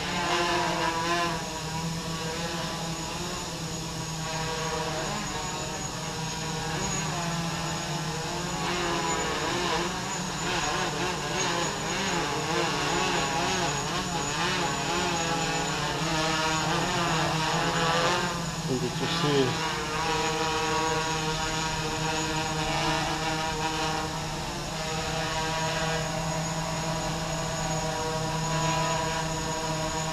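Quadcopter with four MS2208 brushless motors and 8-inch props hovering, its motors and propellers whirring in a steady, many-toned whine whose pitch wavers constantly as the flight controller holds it level. There is a brief swoop in pitch a little past halfway.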